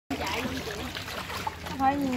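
Water trickling and splashing as small wooden rowing boats are paddled along a canal, under people talking in Vietnamese; a voice speaks clearly near the end.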